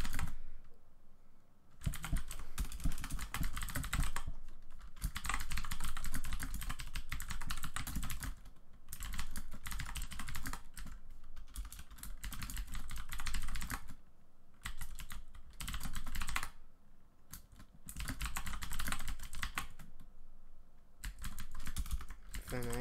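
Typing on a computer keyboard: runs of rapid key clicks, broken several times by pauses of about a second.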